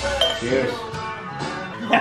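Drinking glasses clinking together in a toast, a short high ring just after the start, over voices and fading background music.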